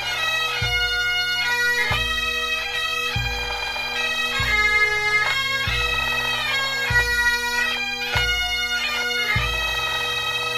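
Pipe band playing: Great Highland bagpipes with their steady drone under the chanter melody, and a deep drum beat about every second and a quarter.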